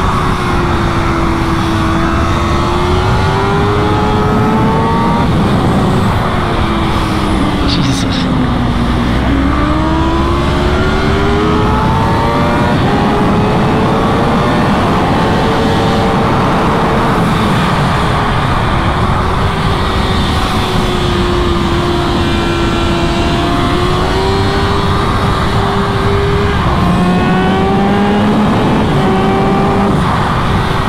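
2018 Kawasaki ZX-6R's inline-four engine running at high revs on a racetrack, its pitch rising and falling with throttle and gear changes, dropping sharply about eight seconds in and then climbing again. Wind rushing over the bike at speed runs underneath.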